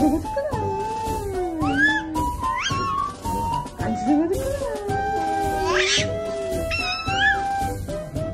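A baby cooing and squealing in short rising, gliding vocal sounds, over background music with long held notes.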